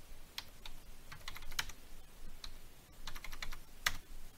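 Computer keyboard typing: scattered single keystrokes, then a quick run of several keys near the end.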